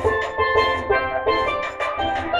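Steel pan playing a reggae melody: a quick run of struck notes, several a second, each ringing out with bright overtones, over a low bass accompaniment.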